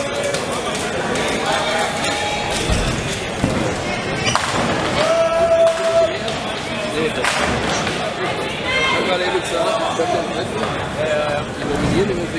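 Nine-pin bowling balls thudding onto the lanes and pins being knocked down, a few sharp knocks, over steady spectator chatter.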